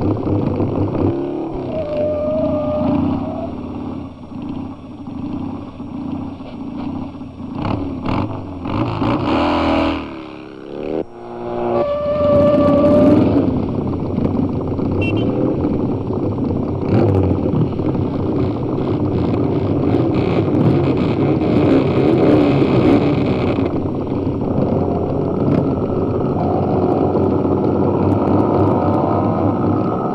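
Motorcycle engines running and revving on the soundtrack, several machines together, with a brief drop and a rev-up about ten seconds in.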